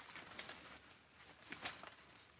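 Faint rustling and a few light clicks of a fabric bag being handled and pulled off a shelf.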